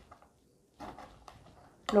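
Knife slicing a jalapeño into rounds on a cutting board: a few faint cuts and taps of the blade against the board, starting about a second in.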